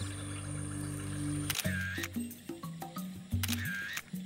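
Background music with held notes, with two camera shutter clicks, about a second and a half in and again near the end.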